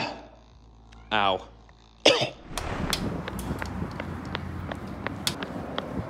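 A man's short grunts in the first two seconds, then running footsteps on a rocky trail, about three strides a second, with wind rushing on the microphone.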